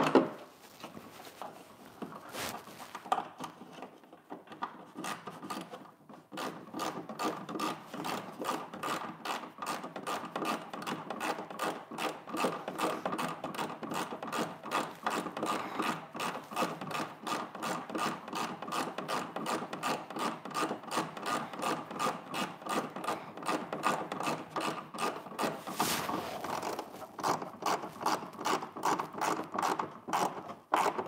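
Hand tool driving in the bolts that join a large RC jet's fuselage halves: a sharp knock at the start, then from a few seconds in a fast, even run of clicking strokes, about four a second.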